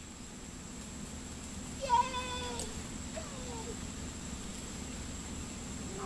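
A woman's high-pitched, drawn-out "Yay!" of praise to a dog, once, about two seconds in, over a steady low background hum.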